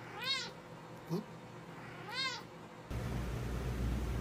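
A cat meowing twice, about two seconds apart: two short high meows, each rising and then falling in pitch.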